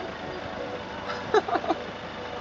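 A person laughing in a short burst of a few pulses about a second in, over a steady background hum.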